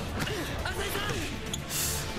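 Volleyball anime soundtrack playing at a low level: background music and character voices, with a sharp hit about one and a half seconds in and a short burst of noise just after.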